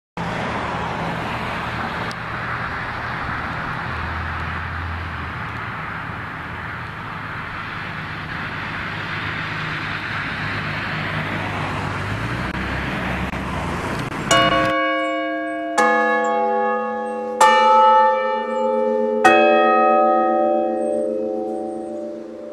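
Church tower bells of different pitches: four strikes, about a second and a half to two apart, each left ringing so the notes overlap. They follow a steady rushing background noise with a low hum that cuts off abruptly.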